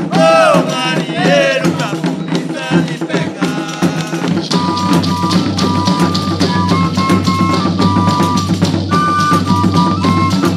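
Bahian Reis (Epiphany folk) ensemble music. Voices sing for the first couple of seconds over drums, then a melodic instrument plays held notes that step up and down over a steady drum beat.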